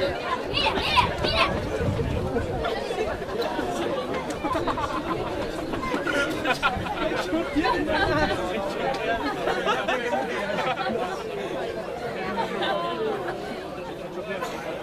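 Indistinct chatter of several spectators talking at once, overlapping voices with no single clear speaker.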